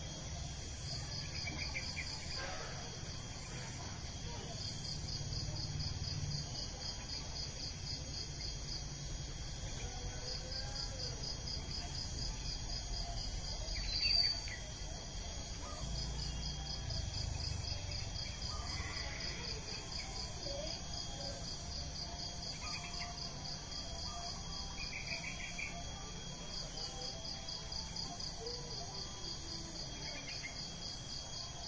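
Insects trilling: a rapid pulsed trill that comes in bouts several seconds long over a steady high buzz, with a few short chirps. A single sharp click about halfway through.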